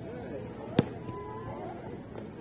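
A basketball bouncing once on a hard outdoor court, a single sharp smack about a second in, with distant voices in the background.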